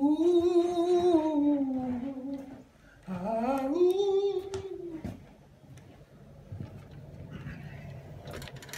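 A voice singing two long wordless notes, the first held for over two seconds and sinking slowly in pitch, the second sliding up and then held; after them only faint room noise with a few light knocks.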